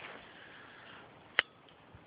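A single sharp click about a second and a half in: the flint wheel of a Bic-style butane lighter being struck, and no flame catching in the cold.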